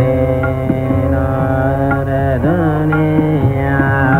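Male Hindustani classical vocalist singing a raga, holding long notes and gliding between them, over a steady drone.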